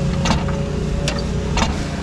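An engine idling steadily, with a few sharp clicks over it.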